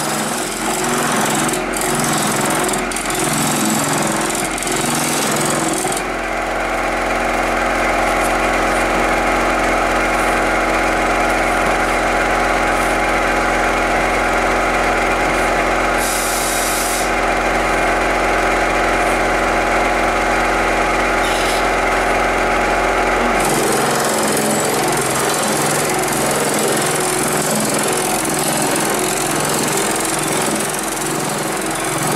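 A Pullmax reciprocating metal-forming machine running, its ram hammering rapidly on a sheet-metal panel fed between its dies to shrink the metal. The sound turns steadier and more evenly pitched about six seconds in, then goes back to its rougher clatter a little before the last quarter.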